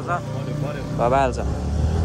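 Motorbike engine running while riding, a low steady hum that grows a little louder near the end, with a short spoken word about a second in.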